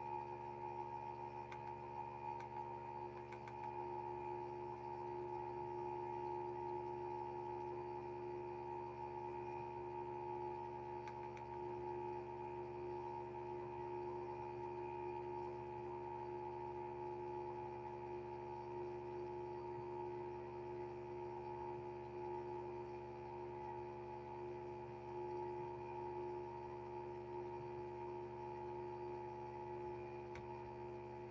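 Steady electronic drone of several held tones coming through the computer's audio, unchanging throughout.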